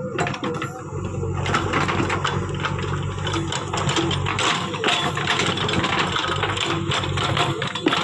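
JCB backhoe loader's diesel engine running steadily, with a dense, irregular clatter and scrape of rocks as the backhoe bucket digs through rubble.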